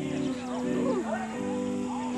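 Music with sustained held notes that change every half second or so, with people's voices talking over it.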